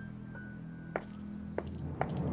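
Quiet background score: a low sustained drone, with two short light clicks about one second and a second and a half in.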